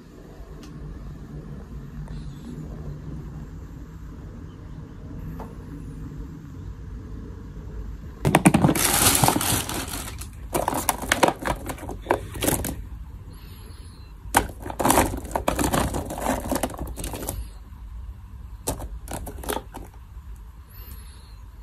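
Small plastic Pokémon Moncolle figures clattering against each other and the clear plastic storage box as a hand rummages through them. The clatter comes in several loud bursts from about eight seconds in, with a few lighter clicks near the end.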